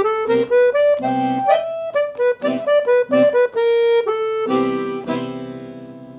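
Dallapè piano accordion playing a quick run of single melody notes from the E blues scale over a C major seventh chord. Near the end it settles on a held chord that fades away.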